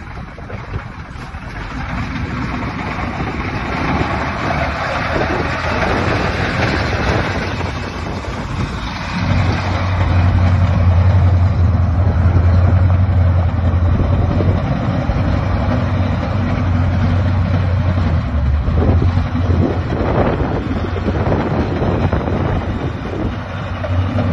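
1984 International 1754 dump truck's engine running as the truck drives a loop on gravel, pulling away and coming back. A low steady drone grows louder through the middle stretch, then eases near the end.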